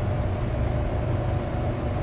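Steady low background hum and rumble, with no knock, bang or other distinct event.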